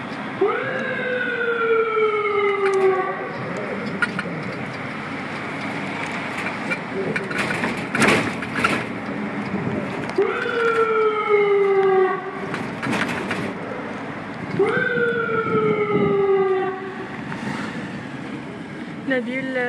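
A patrol van's siren sounding three long calls, each a quick rise then a slow falling tone, over the van's running engine and road noise. Sharp knocks around the middle.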